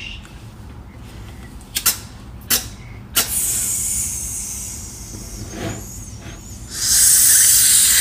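An egg tapped three times against a frying pan, then a sizzling hiss that starts with the last tap, eases off, and swells much louder near the end.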